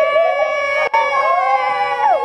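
Several girls' voices shrieking together in a long, high, held cry, briefly cut off near the middle, with one voice falling away in pitch at the end.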